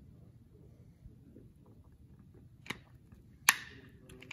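Quiet stretch while a shake is drunk from a plastic shaker bottle, then two sharp plastic clicks near the end, the second louder with a short noisy tail, as the bottle is lowered and its flip-top lid handled.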